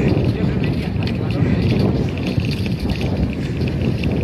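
Wind rushing over a phone's microphone as it films from alongside moving bicycles on a road, a steady noisy rumble with faint voices under it.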